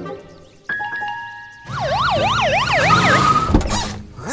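Cartoon sound effects over background music: a held two-note tone, then a siren-like tone sweeping up and down about three times a second, followed by a sudden thump near the end.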